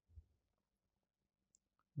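Near silence: room tone in a pause in speech, with a faint low thump just after the start and a couple of tiny clicks near the end.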